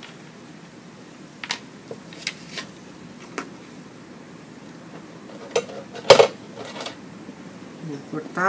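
Scattered light taps and clicks of small craft tools and objects being picked up and set down on a cutting mat. The loudest is a sharper knock about six seconds in.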